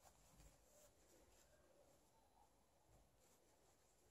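Near silence: room tone with a few faint rustles of a sheer chiffon scarf being handled and turned over.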